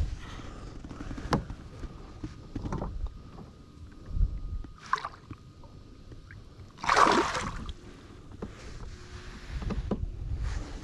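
Handling noise from a camera being moved against clothing aboard a kayak: rubbing, scattered knocks and clicks, and a low thud about four seconds in. A louder half-second rushing burst comes about seven seconds in.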